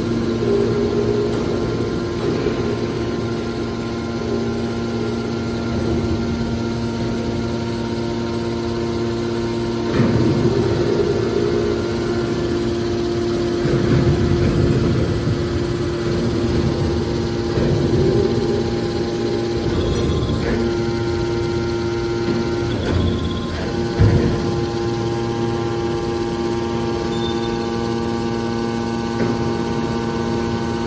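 Electric-hydraulic power unit of a scrap-metal baler running with a steady hum, its low rumble swelling at times as the press works, with a couple of sharp metallic knocks.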